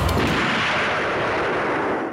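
Loud, dense noise-like dramatic sound effect with a deep rumble. The low end drops away about half a second in, and the rest fades gently toward the end.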